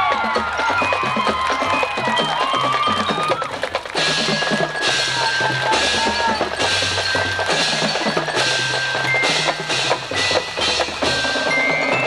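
Marching band percussion section playing: mallet keyboards ring out short notes over low drums. From about four seconds in, a regular beat of bright cymbal-like hits comes a little under a second apart, and a quick rising run on the bells comes near the end.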